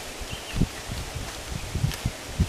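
Handling noise from a small plastic bag being worked in the hands: irregular low bumps and faint rustling, with one sharp click near the end.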